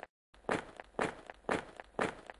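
Footstep sound effect: evenly paced steps, about two a second, each a short thud with a brief tail, timed to an animated paw print walking across the closing slide.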